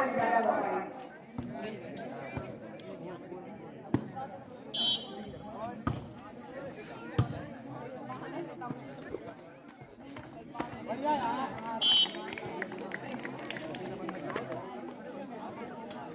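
Voices and chatter around a volleyball court, cut by two short referee whistle blasts: one about five seconds in and a louder one about twelve seconds in. A few sharp knocks sound in between.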